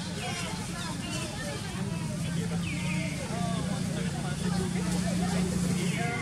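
Outdoor background of distant, indistinct human voices over a steady low hum, with a few short high chirps.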